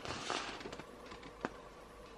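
Faint rustle of a curled paper art print being handled, with one light tick about one and a half seconds in.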